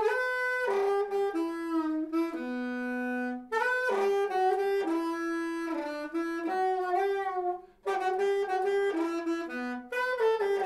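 Saxophone playing a slow solo melody, a line of shifting notes that includes a longer held low note about two and a half seconds in and a short break near the eight-second mark.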